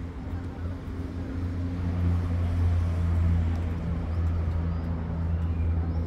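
A steady low mechanical hum, like an engine running, that swells slightly in the middle, with a few faint bird chirps in the second half.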